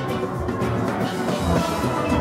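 Steelband playing: the deep notes of the bass pans sound close, with the higher steel pans ringing above them.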